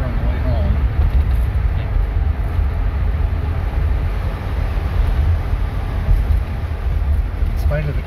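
Inside the cabin of a 1958 Edsel Citation under way: a steady low rumble of engine and road noise.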